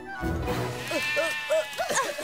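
Sheep bleating in a short series of wavering calls over background music.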